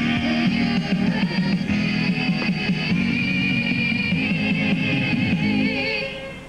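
A mixed group of young men and women singing together to an instrumental accompaniment, holding long notes with vibrato. The song ends abruptly at the close.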